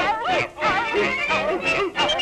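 A pack of cartoon hounds baying in quick, wavering, yodel-like howls, several voices overlapping, over lively orchestral cartoon music.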